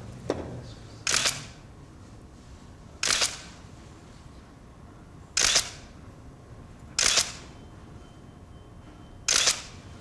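Still camera shutter firing five times, a couple of seconds apart, each a brief sharp snap as the group's photo is taken.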